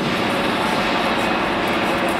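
Steady mechanical rushing noise with no distinct clinks or strikes.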